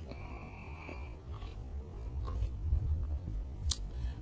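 Low, uneven rumble of wind and handling noise on a handheld phone's microphone, with a faint high tone in the first second and one sharp click near the end.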